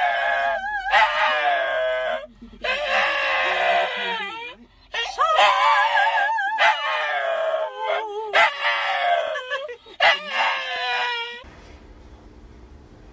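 A small white-and-tan terrier howling along with a woman's voice, in long wavering notes broken by short pauses. It stops suddenly near the end.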